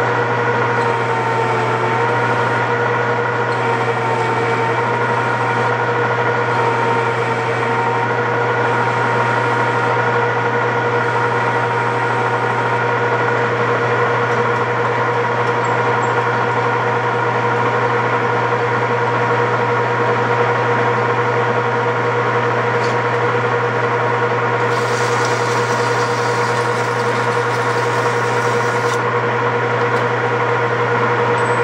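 A 13x40 metal lathe running steadily under power with a constant whine, while a boring bar cuts a bevel into the inside edge of a bushing sleeve.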